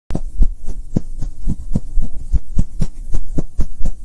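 Rhythmic low thumps of a logo-intro sound effect, about four a second, steady and loud, like a pounding heartbeat.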